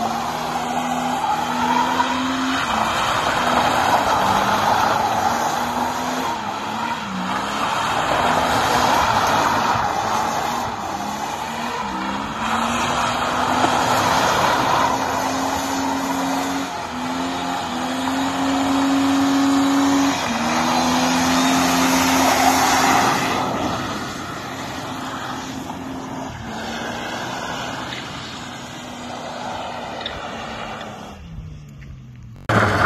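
Ford Falcon sedan doing a burnout: the engine is held at high revs, its pitch stepping up and down as the throttle is worked, over a continuous tyre screech. The sound drops somewhat in the last quarter.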